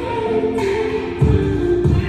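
Music with sung voices over a pulsing low beat.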